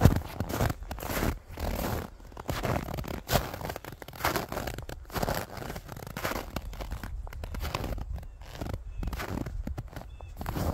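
Footsteps crunching in snow at a steady walking pace, one step about every half second to second.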